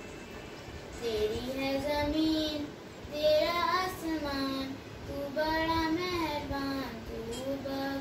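A young girl singing a Hindi school prayer solo, in slow held phrases with short breaks between them.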